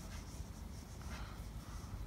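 Faint rustling and scraping of a knitting needle through wool yarn as stitches are picked up one by one along a knitted edge.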